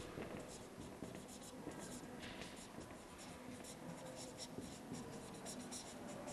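Felt-tip marker writing on flip-chart paper: faint, scratchy strokes in quick succession.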